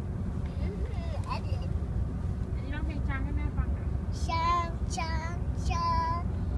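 A young child singing a few high, wavering notes without clear words over the steady low rumble of a moving car's cabin.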